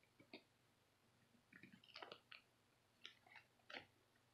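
Near silence with a few faint clicks and crinkles of small plastic items being handled, the formula scoop and its container among them.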